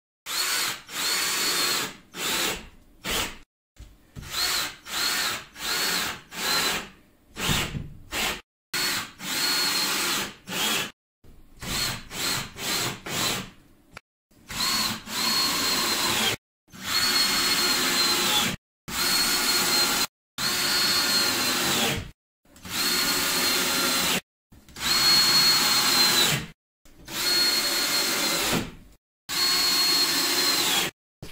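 Cordless drill driving screws through cement board into the subfloor: a string of short runs, each a whine that spins up and winds down, the later runs longer, with abrupt breaks between them.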